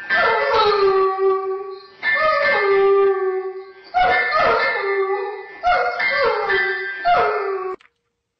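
A dog howling: about five long howls, each falling in pitch and then held, that cut off suddenly near the end.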